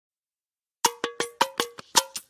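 Sharp pitched percussion strikes in a quick, even rhythm of about five a second, beginning just under a second in, each with a short ring: the lead-in to a piece of music.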